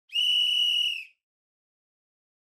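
A single steady, high-pitched whistle blast lasting about a second.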